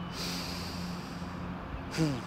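A man drawing a long, deep breath in through his nose, lasting about a second.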